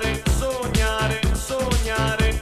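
Flash house dance track playing in a DJ mix: a steady four-on-the-floor kick drum, about two beats a second, under synth chords and a melody line.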